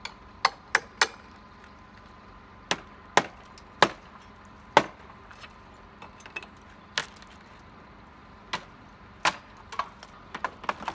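A steel hammer striking a chisel wedged into an old wooden rafter tail, about a dozen sharp blows spaced irregularly, working the rotted section loose.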